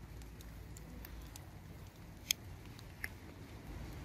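A few faint, crisp clicks and snaps from hands handling a green tomato scion stem and a small grafting blade, the clearest a little over two seconds in, over a low background rumble.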